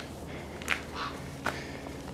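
A few short scuffs and taps of footsteps on rocky ground, three sharp ones spaced about half a second apart.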